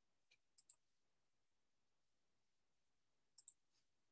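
Near silence broken by a few faint computer-mouse clicks: a small group about half a second in and another near the end.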